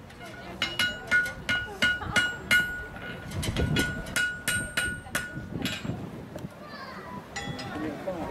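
Farrier's hammer striking a heated steel horseshoe on an anvil to shape it to the hoof, each blow ringing. There are about fifteen strikes at roughly three a second, and they stop about six seconds in.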